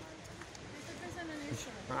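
Faint, indistinct voices over a steady outdoor background hiss, with a brief murmur of a voice about one and a half seconds in.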